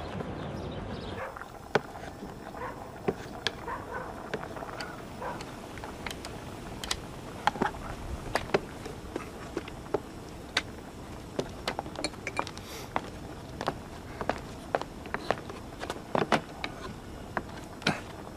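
Scattered, irregular wooden knocks and clicks as a wooden stool is handled and repaired.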